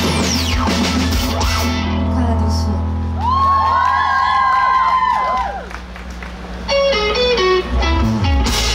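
A rock band playing live. An electric guitar plays a long bent, held lead note over steady bass. The music dips briefly, then a quick run of notes steps downward near the end.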